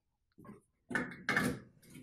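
Handling noise as an LED bulb is raised and fitted into a recessed ceiling light socket: rustling and scraping, with two louder scuffs close together about a second in.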